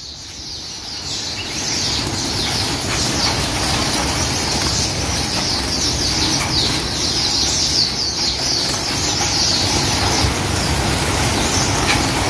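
A large flock of Gouldian finches in wire aviary cages: a steady, dense chatter of many overlapping high-pitched chirps, with wings fluttering as birds fly about.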